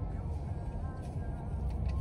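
Steady low rumble of a car idling, heard inside the cabin, with faint music in the background.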